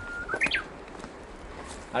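A bird singing: a long steady whistled note ends just after the start, then a short rising flourish follows about half a second in.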